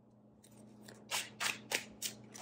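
Tarot cards sliding and rubbing against each other as the next card is drawn from the deck: three short papery swishes about a third of a second apart, starting about a second in.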